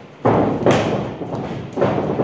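Stick sparring: a run of thuds from fast footwork on a padded boxing-ring mat and sticks striking, with the sharpest stick hit a little under a second in and another thud near the end.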